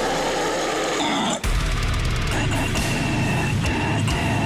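Heavy metal song playing, with distorted guitars, bass, drums and harsh vocals. The band stops for a split second about a second and a half in, then comes back in.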